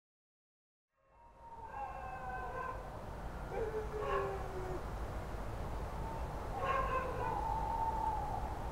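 Dogs howling in the distance, three long howls, the middle one falling in pitch, over a low steady rumble that fades in about a second in.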